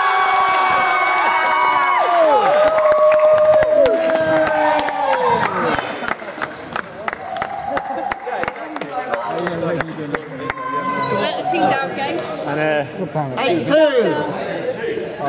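A small group of players cheering and whooping in a large sports hall after a point is scored, several long held shouts overlapping for the first six seconds, then breaking into excited chatter.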